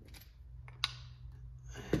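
A few light clicks of a small bearing being set by hand into a brass steering knuckle, with one sharper click a little under a second in.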